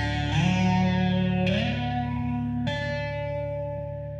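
Closing notes of a band arrangement: electric guitars and bass hold sustained notes. The notes slide up twice, then new notes are struck about a second and a half and two and a half seconds in, and a last note is left ringing and fading away.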